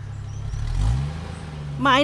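Car engine running, its pitch rising as it revs up about half a second to a second in, then holding steady. A voice begins speaking near the end.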